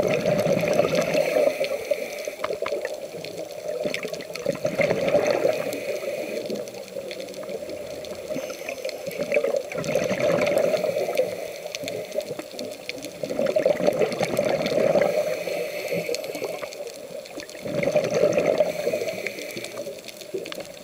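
Scuba diver breathing through a regulator underwater: five surges of exhaled bubbles, each lasting two to three seconds, coming about every four to five seconds.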